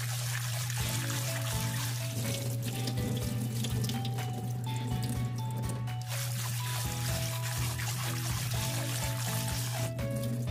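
Tap water running into a glass bowl while hands swish and rub fresh peas in it to wash them, under background music: a melody of held notes over a steady low hum.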